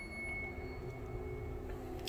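Power liftgate of a 2021 Dodge Durango opening under its electric motor: a faint, steady hum with a thin high whine that fades out near the end.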